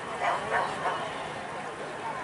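Wire fox terrier barking on the run, three quick barks in the first second, over background voices.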